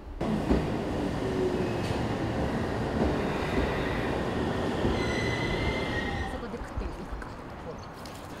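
An electric train running at a station platform: a steady rumble with a high metallic squeal about five seconds in, fading away near the end.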